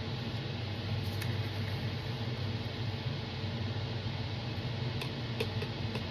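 Steady low mechanical hum with a light hiss, like a room fan running, with a few faint clicks about a second in and near the end as a small pigment jar is handled.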